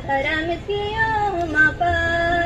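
Female voices singing a devotional song together, a melody with sliding notes; a new phrase starts about half a second in.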